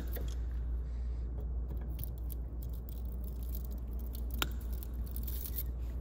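Diagonal cutters snipping through the copper windings of a ceiling fan motor's stator: a sharp click at the start and another about four and a half seconds in, with small handling ticks, over a steady low hum.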